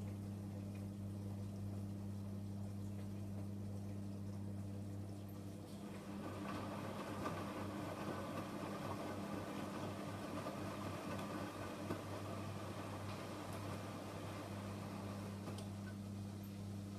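Beko WME8227W washing machine draining during its spin-drain stage: the drain pump hums steadily. About six seconds in the drum turns, and wet laundry and water slosh inside it for some eight seconds before the steady hum carries on alone.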